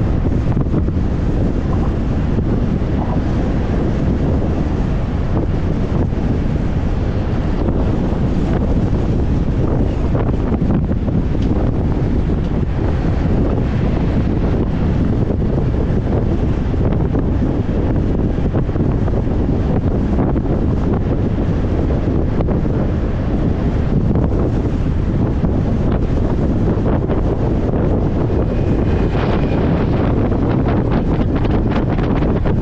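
Steady wind noise buffeting the microphone of a moving motorcycle, with the bike's running and road noise underneath.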